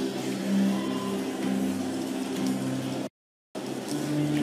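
Held keyboard pad chords sound a steady low drone under the murmur of a congregation praying aloud. The sound cuts out completely for about half a second near the end.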